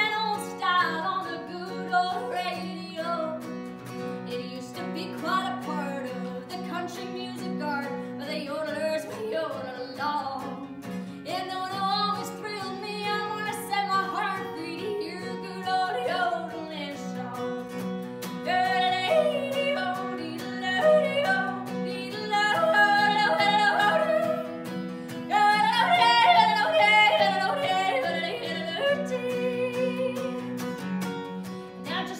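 A woman singing and yodeling a country song, her voice flipping quickly between low and high notes, to her own strummed acoustic guitar. The yodel passages in the second half are the loudest.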